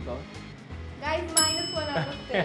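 A bright bell-like ding, an editing sound effect, strikes about one and a half seconds in and keeps ringing, over a voice.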